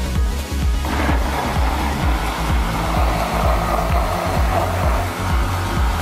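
Electric countertop blender running, puréeing boiled asparagus and vegetable soup: a steady churning noise that starts suddenly about a second in and dies down near the end, over background music with a steady beat.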